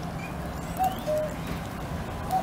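Common cuckoo calling once about a second in: a two-note cuck-oo, the second note lower, over a low steady rumble.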